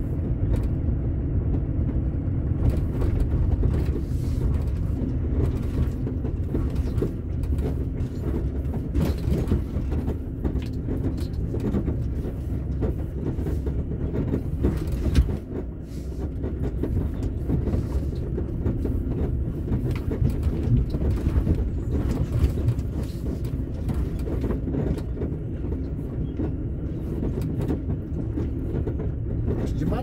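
Truck engine droning steadily inside the cab as it crawls along a rough dirt road, with frequent sharp rattles and knocks from the bouncing cab. The drone dips briefly about halfway through.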